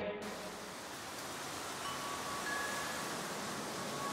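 A quiet gap in the background music soundtrack: a faint, even hiss with a few faint, thin high tones held briefly, between the end of one song and the start of the next.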